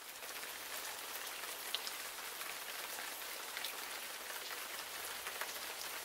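Rain sound effect: a steady hiss of falling rain with individual drops ticking through it.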